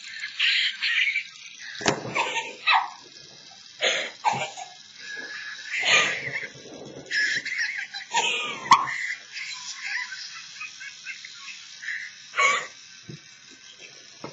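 High-pitched laughing and squealing voices in short bursts, with pitch that slides up and down throughout.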